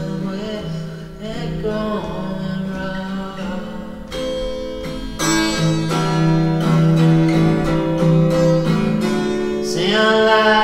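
Indie band recording: guitar strummed over held chords, with a vocal line in the background, growing fuller and louder about halfway through.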